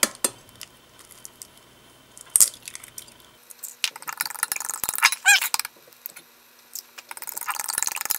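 An egg knocked sharply on a glass measuring cup to crack it, then a fork whisking beaten egg in the glass cup: rapid clinks of metal on glass from about halfway through, with one short squeak.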